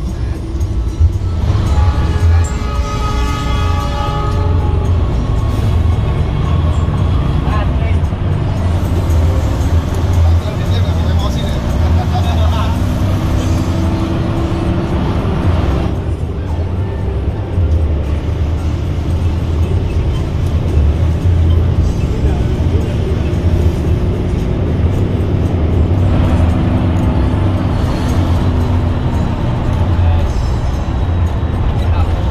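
Hino AK8 bus engine running steadily, heard from inside the cabin, with music and singing playing over it.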